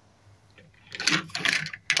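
Die-cast metal toy cars clicking and clattering against one another and the tabletop as a hand shuffles them, starting about a second in.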